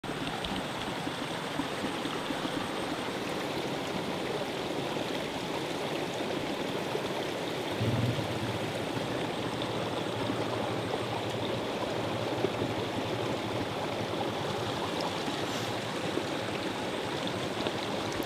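Steady, even rushing background noise with no speech, like running water or wind. A low steady hum joins in about eight seconds in.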